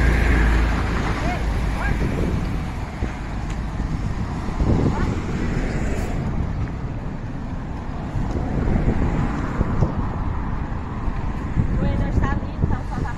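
Road traffic going by, with wind rumbling on the microphone, strongest in the first second or so.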